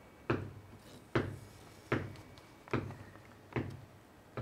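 A steady pulse of single knocks, five of them evenly spaced a little under a second apart, kept as a beat to count time by for a rhythm exercise.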